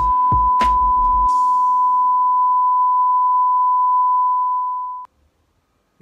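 A long, loud electronic beep, one steady pitch held for about five seconds and cutting off suddenly. A music beat fades out under it in the first second.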